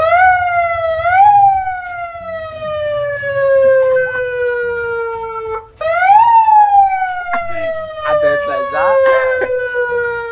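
Siren wailing: two long tones, each rising briefly and then sliding slowly down in pitch. The first breaks off and the second starts a little under six seconds in.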